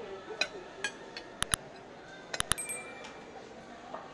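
Metal forks clinking and scraping against ceramic plates: a series of about eight sharp clinks, three coming quickly together a little past the middle, the last ringing briefly.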